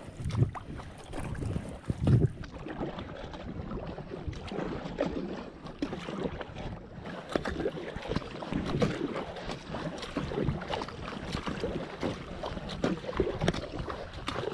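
Kayak paddle strokes dipping and splashing in calm river water, with water running along the kayak's plastic hull, and some wind buffeting on the microphone.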